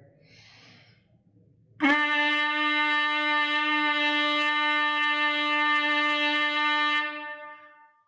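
Trumpet playing one long, steady note that starts about two seconds in, is held for about five seconds and then tapers away, in an echoing room.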